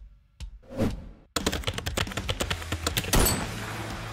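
Logo-animation sound effects: a short falling whoosh about a second in, then a rapid clatter of small sharp clicks over a low hum, ending in a sharp, loud hit with a ringing metallic tail near the end, as a bullet hole appears in the logo.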